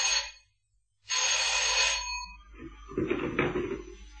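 Telephone bell ringing in bursts of about a second, with about a second of silence between them. After the second ring it stops, and quieter low sounds follow.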